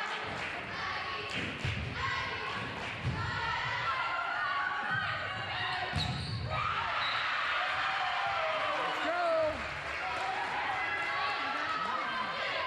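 A volleyball struck several times during a rally, a short sharp smack at each contact, the hardest about six seconds in as a player attacks at the net. Around it are voices calling and shouting, all reverberating in a large gymnasium.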